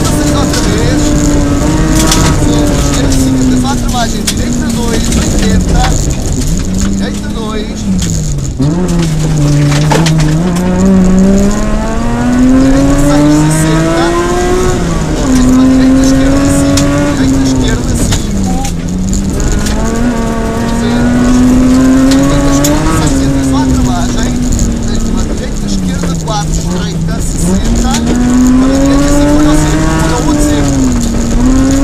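Rally car engine heard from inside the cabin, revving hard and changing gear: its pitch climbs and drops sharply again and again through the gears. Gravel clatters against the car's underside.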